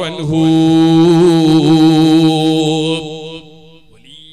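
A man's voice chanting in a religious melodic style, holding one long drawn-out note with a slight waver, then fading out near the end.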